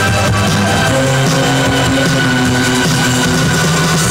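Live gothic post-punk band playing an instrumental stretch: held keyboard notes over bass guitar and electric guitar, at a steady, loud level.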